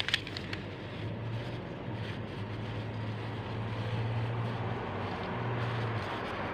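Street traffic noise, with a low engine hum that swells and drops away, and a short click just after the start.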